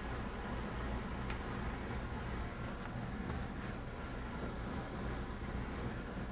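Steady low room hum with a few faint light clicks and taps as a plastic cookie cutter is pressed through rolled gingerbread dough onto the table.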